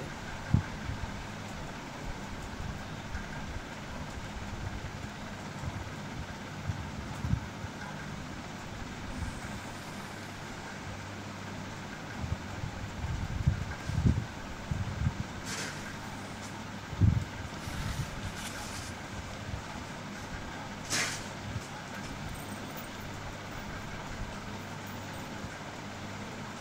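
Pencil lines being drawn along a plastic ruler on paper: a few dull knocks as the ruler is set down and shifted, and two short scratchy pencil strokes in the second half, over a steady low hum.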